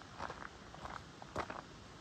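Footsteps of a person walking on a gravel and dirt trail, several steps with the loudest about one and a half seconds in.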